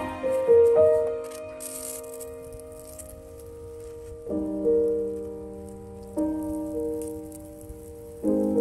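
Background music: slow, soft sustained chords, a new chord coming in every two seconds or so and fading out before the next.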